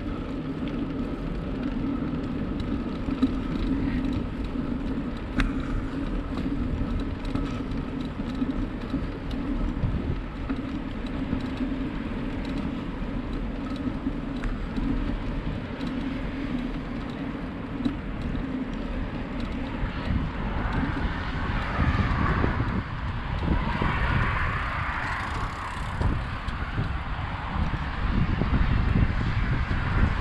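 A bicycle riding along a paved trail, with steady tyre and drivetrain hum and wind on the microphone. About two-thirds in, a louder rushing sound swells and fades away. The low rumble grows louder near the end.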